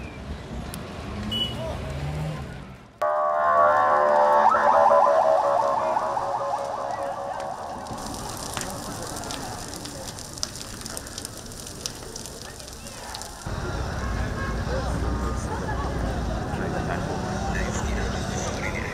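Street and crowd noise, then after an abrupt cut a loud electronic alarm with a fast pulsing tone, like a car alarm, for about five seconds. It is followed by the hiss and crackle of a large fire burning, and in the last few seconds by louder street and crowd noise.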